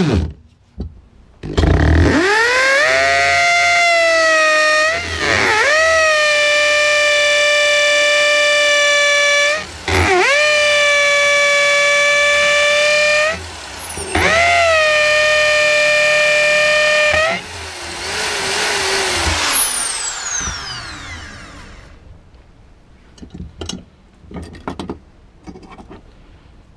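Electric Bosch drill with a masonry bit boring through a pebble clamped in a vice. Its motor whine climbs to speed about two seconds in and holds steady, dipping briefly three times. About two-thirds of the way through it stops and winds down with a falling whine.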